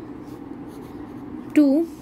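Pen writing on lined notebook paper, a faint scratching over a steady low hum, with one spoken word near the end.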